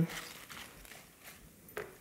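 Faint rustling of fresh spinach leaves being handled and dropped into a saucepan.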